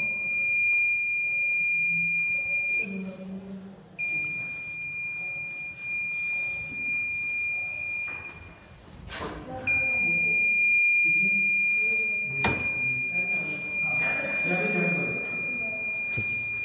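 Buzzer of a homemade laser-beam security alarm sounding a steady high-pitched tone, triggered when a hand blocks the laser beam. It sounds three times: about three seconds, then a short gap; about four seconds, then a gap of about a second and a half; then on again from near ten seconds to the end.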